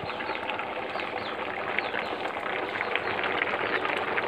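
Bayberries boiling hard in sugar syrup in an open metal pot, a steady dense bubbling with many small pops and crackles.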